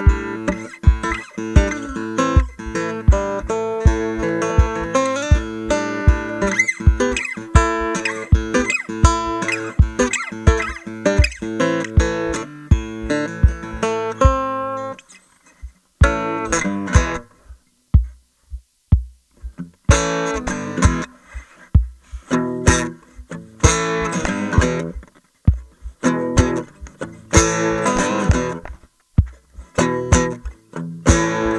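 Peterman WoodPucker Mk2 cedar stomp box, picked up through its cable, giving deep bass thumps on the beat about twice a second under a strummed acoustic guitar. About halfway through, the guitar drops out for a few seconds and the stomp box beat goes on alone. Then the guitar comes back in short strummed bursts.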